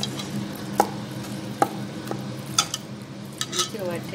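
Fish pieces coated in thick red masala being stirred and turned in a bowl, with about half a dozen sharp clicks of the pieces and utensil against the bowl over a steady low hum.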